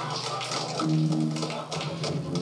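Band music: held low guitar notes that break off and start again about halfway through, with sharp percussive hits above them.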